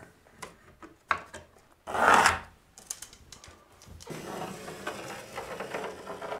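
Light knocks of a metal straightedge being handled, and a brief louder rustle about two seconds in. From about four seconds in, a pencil scratches steadily along the straightedge on wood as a line is marked.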